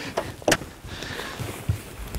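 A lure cast with a fishing rod: a sharp click about half a second in, then a faint hiss lasting under a second.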